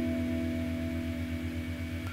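Acoustic guitar's final E minor notes ringing out after the last pluck and slowly fading away, with no new notes played.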